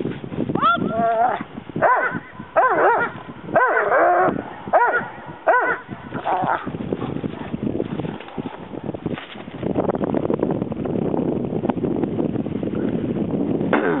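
Doberman in protection bite work giving a run of about six short, high-pitched yelping calls that rise and fall in pitch, followed by a rough, steady noise.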